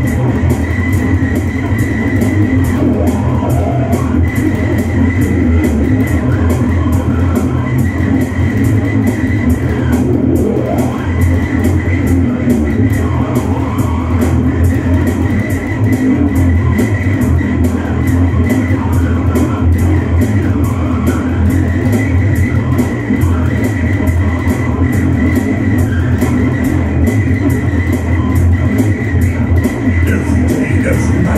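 Electric bass guitar played through an amp in a heavy rock instrumental with a fast, steady beat; no singing.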